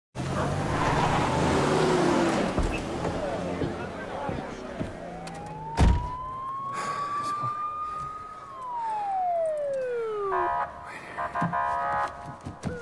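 A police car siren wailing: it rises slowly to a high pitch, then slides back down, and a steadier multi-tone siren sound follows near the end. About six seconds in, a car door shuts with a single heavy thump, over a background of busy street noise.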